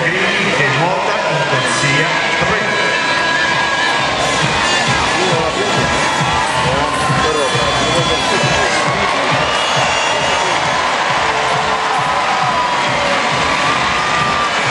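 Large spectator crowd cheering and shouting continuously during a swimming race, a steady loud mass of many voices.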